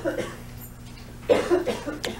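A person coughing twice, the first cough ending just after the start and the second about a second and a half in, over a steady low hum.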